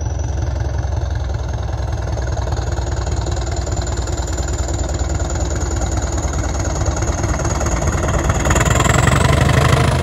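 English Electric Class 20 diesel locomotive hauling a train past, its deep engine drone with a thin high whistle on top, growing steadily louder as it approaches and loudest near the end.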